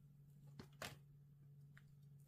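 Near silence: room tone with a steady low hum, and two brief, soft scrapes of a tarot card being drawn from the deck and handled, about half a second and just under a second in.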